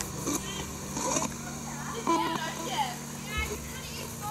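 Voices of passers-by talking at a distance, over a steady low hum, with a couple of short knocks near the start.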